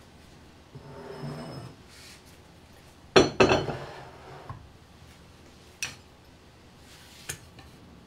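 Polish stoneware pottery being handled and set on wooden shelves: a loud clatter of ceramic a little after three seconds, followed by two lighter clinks near the end.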